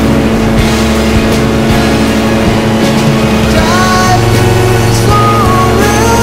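Steady drone of a light propeller aircraft's engine in flight, mixed with a rock song whose melody steps between pitches in the second half.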